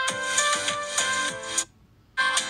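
Background music: a bright electronic melody over percussion, breaking off into a short silence near the end.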